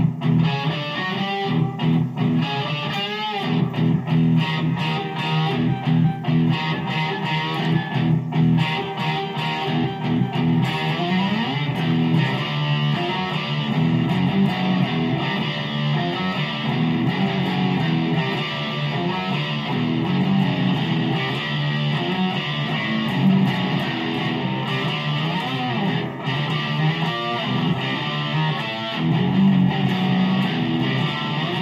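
Electric guitar played through an amplifier: a continuous run of picked riffs and changing notes.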